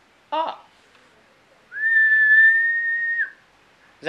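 A person whistling one long, steady high note for about a second and a half, sliding up into it and dropping off at the end.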